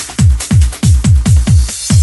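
Electronic progressive trance music with a steady four-on-the-floor kick drum, about two beats a second, and off-beat hi-hats above it. The kick drops out briefly near the end before coming back in.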